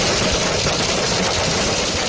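Hail pelting a car's windshield and body, heard from inside the moving car: a dense, steady clatter of countless small impacts over road noise.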